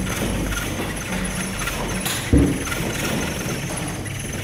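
Gondola cabin riding in toward the station, a steady rumble of the moving cabin and cable, with one heavy knock a little after halfway through as the cabin's grip runs over the line's rollers.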